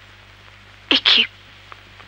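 A woman giving short, breathy vocal bursts: one about a second in and another starting near the end, each a brief voiced onset running into a rush of breath.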